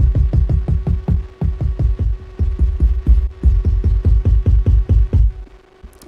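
A low drum sample on a Maschine MK3 pad retriggered in rapid repeats, about five or six hits a second, while it is being retuned. The hits stop shortly before the end.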